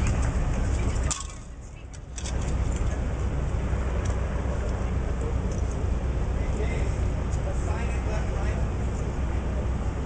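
Outdoor background noise: a steady low rumble with indistinct voices. It drops away sharply for about a second, starting about a second in, then returns.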